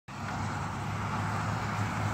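Steady hum of road traffic from a busy multi-lane road, cars passing continuously with no single vehicle standing out.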